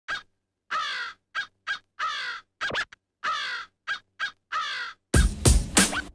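Crow cawing: a series of separate caws with falling pitch, some short and some drawn out. A loud hip-hop beat with heavy drum hits comes in about five seconds in.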